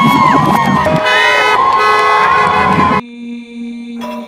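Crowd of marchers shouting and cheering, with voices rising and falling in pitch. It cuts off abruptly about three seconds in, leaving a quieter steady tone.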